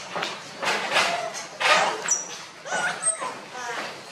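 Young macaques giving a series of short, high-pitched squeaks and calls, some gliding up or down in pitch, with voices alongside.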